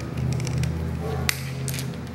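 A few light metallic clicks and taps of a screwdriver and small steel parts against the rotary table and the steel bench plate, over a low steady hum that stops near the end.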